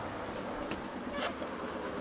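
Quiet outdoor background with two brief, faint high chirps about half a second apart, from birds.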